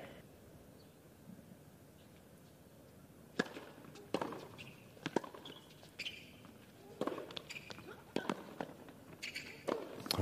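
Tennis rally on a hard court: sharp racket strikes and ball bounces about once a second from about three seconds in, with short sneaker squeaks between them. The first few seconds are a quiet crowd hush before the point gets going.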